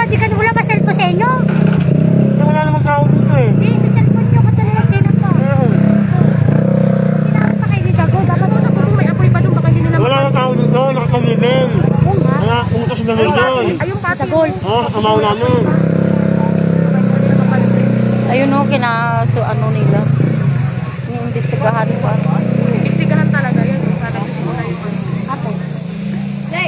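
Several people talking at once over the steady low hum of a motorcycle engine idling close by.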